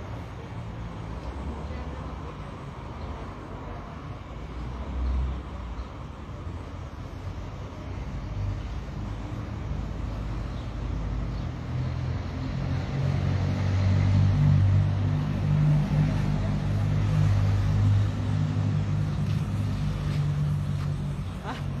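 A motor vehicle's engine running steadily close by, growing louder about halfway through, over street traffic noise.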